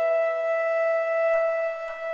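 A long held blast on a shofar (ram's horn): one steady note that weakens near the end.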